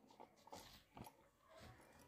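Near silence: room tone in a pause between spoken sentences, with a few very faint brief sounds.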